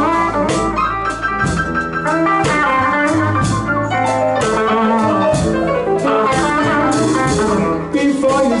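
Live blues band playing an instrumental passage: electric guitar lead over a steady drum beat.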